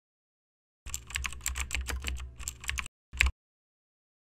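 Typing on a computer keyboard: a quick run of keystrokes for about two seconds, then a single louder keystroke a moment later.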